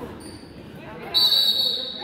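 A referee's whistle blown once, about a second in: a single shrill, steady blast lasting under a second, sounding through a large gym, the signal that stops play.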